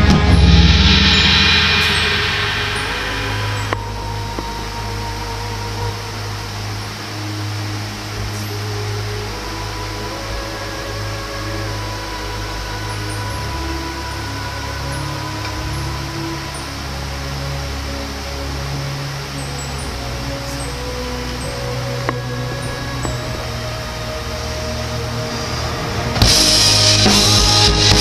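Quiet break in the symphonic metal song's backing track: sustained bass notes under a slow held melody, with no drums. A cymbal rings out and fades over the first few seconds.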